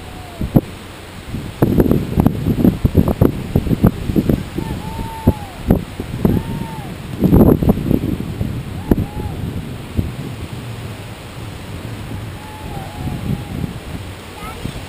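Wind buffeting the camera microphone in loud, irregular gusts over steady surf, with a few short arching bird calls.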